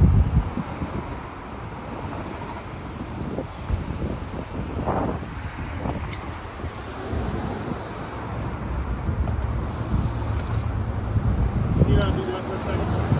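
Wind buffeting the microphone in uneven gusts, over the steady hum of street traffic.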